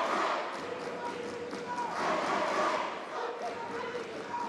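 Crowd of spectators and coaches shouting and calling out, many voices overlapping and swelling in waves.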